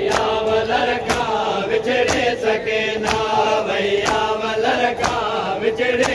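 Male voices chanting a Sindhi noha (mourning lament), with rhythmic chest-beating (matam) strikes landing about once a second.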